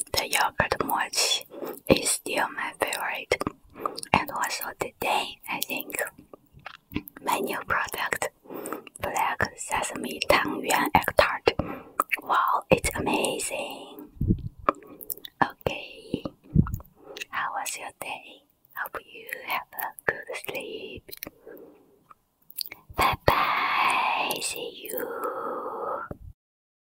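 Close-miked whispered speech with wet mouth and chewing sounds between the words. Two short low thumps come in the middle, and a louder spoken stretch comes near the end.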